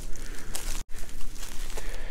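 Footsteps and rustling through woodland undergrowth, with a brief break just under a second in.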